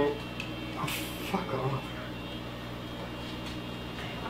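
Steady low electrical hum in a small workshop, with a brief rustle about a second in as e-bike wiring is handled at the handlebars.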